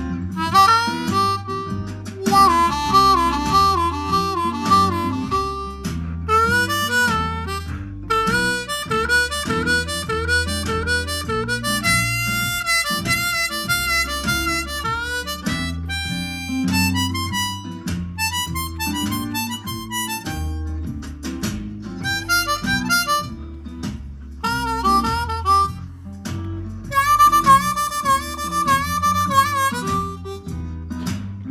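C diatonic harmonica played in second position (key of G): bluesy phrases built on triplets, with some held notes wavering in vibrato. It plays over a blues backing track with guitar.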